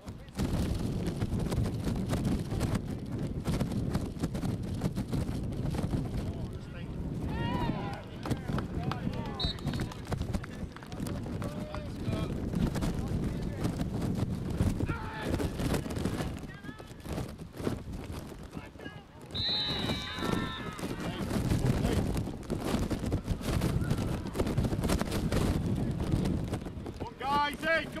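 Open-air sound of a youth football match: a constant low rumble crossed by many short knocks, with scattered distant shouts from players and onlookers. A loud shout rises about two-thirds of the way through, and a "come on!" cheer comes right at the end.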